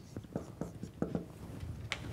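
Marker pen writing on a whiteboard: a faint run of short scratching strokes and small taps.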